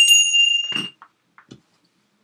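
A small bell struck once: a bright, high ring that fades out in under a second, followed by a few faint knocks.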